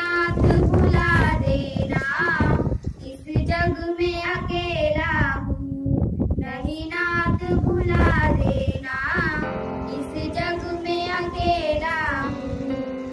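Girls' voices singing a song into a microphone, read from a booklet, in phrases with wavering held notes.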